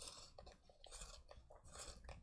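A colouring pencil being turned in a handheld pencil sharpener: a few faint, gritty scraping strokes as the blade shaves the black pencil.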